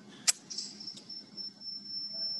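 A sharp click about a quarter second in, then a thin, steady, high-pitched electronic whine with another faint click, heard through video-call audio.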